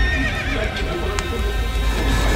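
A wavering, whinny-like high cry in the first second, over a deep rumble and background music.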